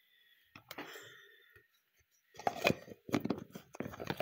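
Hands handling skincare items close to the microphone: quiet at first, then a quick string of clicks and rustles from about halfway through.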